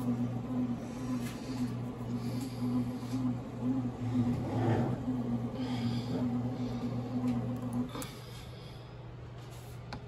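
Pohl Schmitt bread machine's kneading motor running with a steady hum as the paddle works the dough, with a few faint knocks, then stopping about eight seconds in: the machine pausing between kneading cycles.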